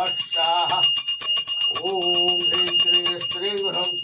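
A bell rung rapidly and without a break, its high ringing tone steady throughout, while a man chants a repeated mantra over it.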